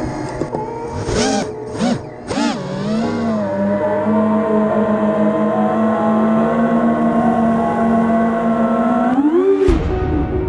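Brushless motors of an FPV racing quad (Emax 2205 2300KV) with propellers spinning: a few quick throttle blips about a second in, the pitch swooping up and down, then a steady high whine in cruise, and a sharp rise in pitch near the end as the throttle is punched.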